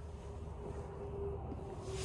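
Quiet room tone in a pause: a faint low steady hum with a thin faint steady tone, and no distinct event.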